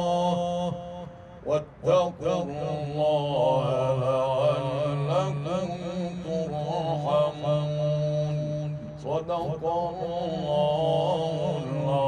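Male Quran reciter chanting in the ornamented Egyptian tajweed style: long held, wavering melodic lines, with a short break about a second in.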